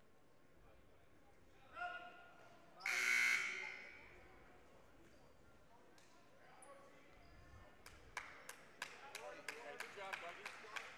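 Gym scoreboard horn sounding once for about a second, some three seconds in, just after a brief pitched call. Near the end a basketball is bounced on the hardwood floor, about three bounces a second.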